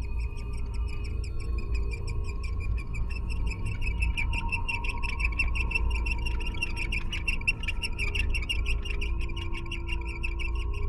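Ambient soundscape: a rapid, even train of high chirping pulses that grows stronger after a few seconds, over steady drone tones and a low rumble.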